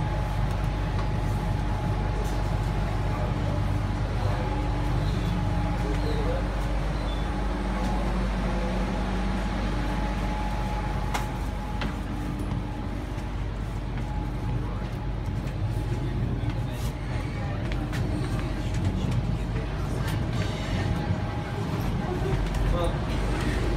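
Interior of a Sydney Trains Tangara electric train carriage: a steady low running rumble with a constant hum, and a few light clicks and knocks.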